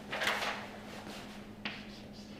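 Chalk on a blackboard: a short scratchy scrape near the start, then a brief tap about a second and a half in.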